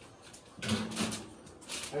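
A person's voice, short and indistinct, between quiet pauses.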